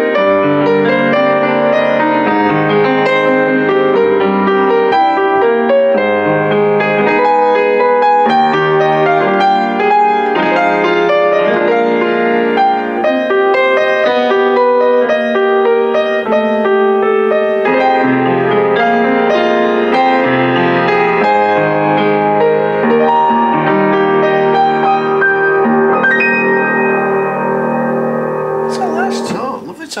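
Kemble K131 upright piano played continuously, a flowing passage of many quick notes across the keyboard at full, unmuted tone with the practice (celeste) pedal released. The top end is clean and "isn't pingy at all". The playing dies away near the end.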